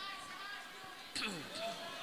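Faint voices of people talking in the background, with a single sharp knock a little after a second in.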